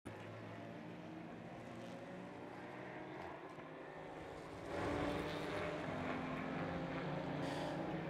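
A steady engine drone with a hum of several fixed tones, growing louder about five seconds in.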